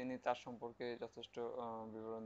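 Speech only: a narrator talking continuously, with no other sound standing out.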